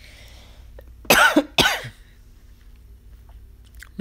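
A person coughing twice in quick succession, two loud, sharp coughs about half a second apart, a second in.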